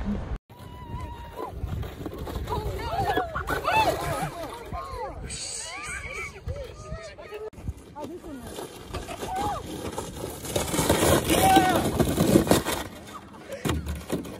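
Children's voices shouting and calling out across a sledding hill. About ten seconds in, a louder scraping hiss of a plastic sled sliding down the snow joins them for a couple of seconds.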